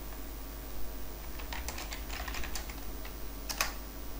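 Keystrokes on a computer keyboard typing a short command: a quick run of key clicks, then a single louder keystroke near the end as the command is entered.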